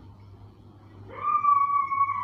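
Felt-tip marker squeaking on a whiteboard as a line is drawn: one long, steady, high squeak that starts about a second in.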